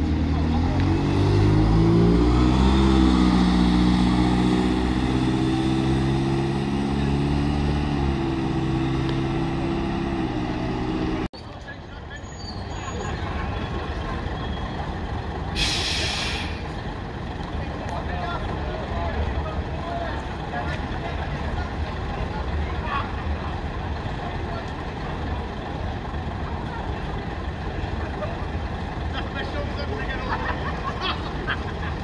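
A single-deck diesel bus pulling away, its engine rising in pitch as it accelerates, for about the first eleven seconds. After a sudden change, buses idle amid crowd chatter, and a short sharp hiss of air brakes comes about sixteen seconds in.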